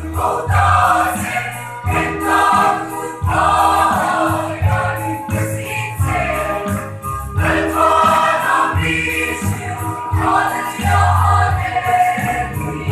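Large mixed choir of men and women singing a gospel song together.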